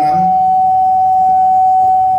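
Microphone feedback through the press-conference PA: a loud, steady whistle held at one pitch.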